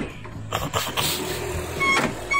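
Metal rattling and clanking from the latch bars of a truck's aluminium cargo-box door being worked open. A rooster begins to crow near the end.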